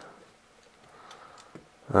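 Faint, scattered light clicks of small plastic model parts being handled and pressed together.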